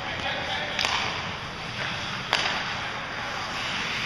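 Two sharp cracks of hockey sticks striking the puck, about a second and a half apart, each ringing out in the rink over steady background noise.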